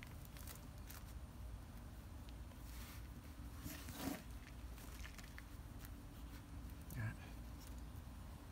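Faint rustling and crackling of hands handling succulent stems and pressing potting soil in a pot, with a few slightly louder rustles about three and four seconds in, over a steady low hum.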